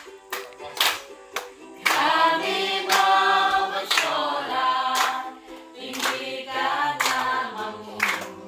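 A group of adults singing together unaccompanied and clapping along in time, about one clap a second.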